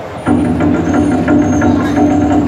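Large festival drum beaten in a fast continuous roll, starting suddenly just after the start and going on steadily: the drumming that urges on the wrestlers once the bout begins.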